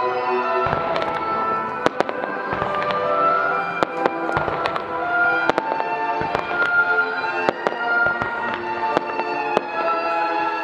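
Fireworks display: aerial shells bursting in a rapid, irregular string of sharp bangs and crackles, with music playing throughout.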